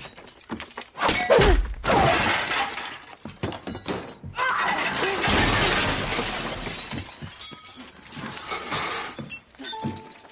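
Film fight soundtrack: glass shattering and furniture crashing as two fighters are thrown about a room, with music under it. There is a short crash about a second in and a longer stretch of breaking and debris from about halfway.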